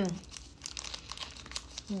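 Crinkling of an energy-bar wrapper being handled and peeled back by hand, a run of irregular small crackles.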